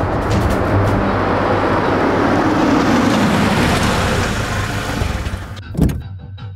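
Dramatic soundtrack effect: a rushing noise swells and fades, ending in one sharp hit near the end, over background music.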